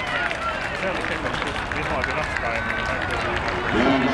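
Spectators and players shouting and calling out as a goal is celebrated, with drawn-out cries over steady outdoor noise.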